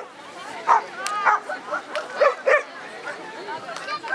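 Border collie giving a quick series of short, high barks and yips, about five in the first three seconds, as it runs.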